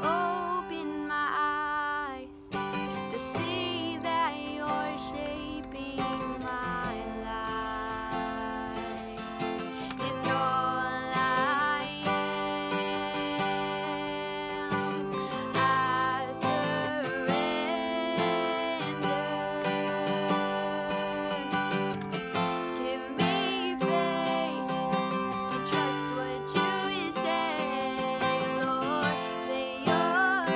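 A strummed acoustic guitar accompanying a young woman singing a slow worship song.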